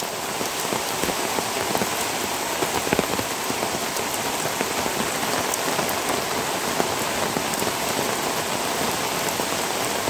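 Steady heavy rain falling outdoors, a dense even hiss with scattered sharper drop hits.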